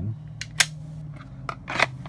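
Glock pistol being handled and pushed into a molded plastic holster: a few sharp plastic-on-plastic clicks and clacks, the loudest about halfway through and another near the end as the gun snaps into its retention.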